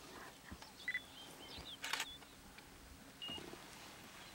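Faint outdoor ambience with a few short bird chirps and whistles, and a brief burst of clicks about halfway through.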